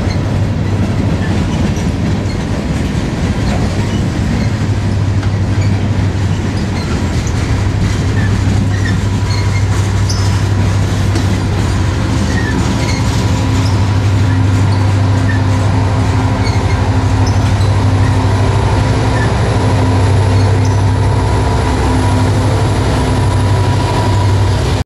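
Freight train rolling past close by: steady rolling rumble and clatter of railcar wheels on the rails, with occasional short high wheel squeaks. In the second half a low diesel hum grows stronger as two diesel locomotives at the rear of the train go by.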